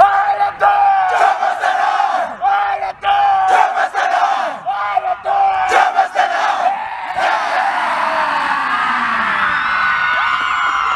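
A rugby team shouting a pre-match war cry in unison: short, held, chanted phrases repeated about once a second for the first seven seconds, then a looser burst of many voices shouting and whooping.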